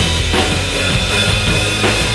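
Yamaha drum kit played along to a rock song, with bass drum, snare and cymbals over the song's recorded backing track.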